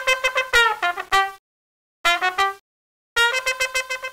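A solo unaccompanied trumpet playing a quick dance riff of short, detached notes in three phrases, with brief silences between them.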